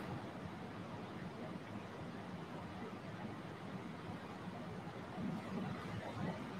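Faint ujjayi breathing: a soft, steady rush of air through a narrowed throat, swelling slightly near the end.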